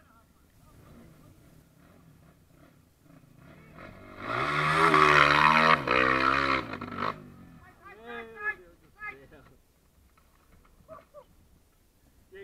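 Off-road dirt bike engine revving hard for about three seconds, its pitch rising and then falling, as the rider takes the steep dirt slope. Shouts from onlookers follow.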